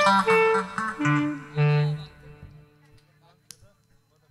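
A live band's tune ending: a few last held notes that die away about two seconds in, followed by near silence with a single small click.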